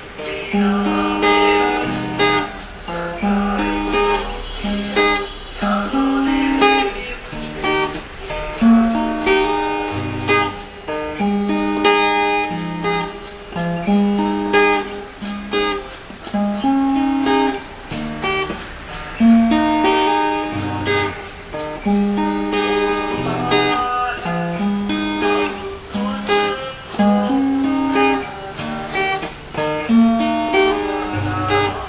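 Acoustic guitar strummed in a steady rhythm, cycling through the chords G, Em7, Csus2 and D, with each chord changing after a second or two.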